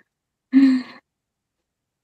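A woman's brief sigh about half a second in, lasting about half a second.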